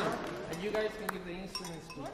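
Indistinct chatter of children and adults, with a light sharp click about a second in.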